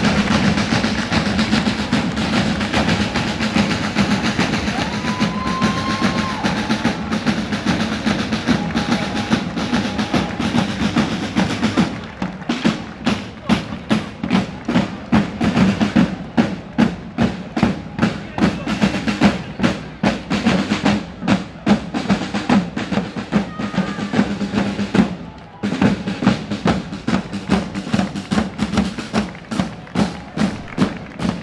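A corps of side drums plays a marching rhythm. For the first twelve seconds the drumming is dense and rolling, then it settles into a steady beat of about four strokes a second, breaking off briefly about twenty-five seconds in.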